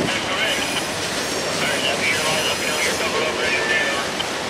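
Freight cars of a mixed manifest train rolling past on steel rails, a steady rumble and clatter of wheels, with brief high-pitched squeals coming and going.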